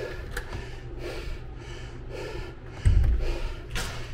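A man breathing hard and fast, panting in quick repeated breaths while recovering from an intense burpee and double-under workout. A loud low thump sounds about three seconds in.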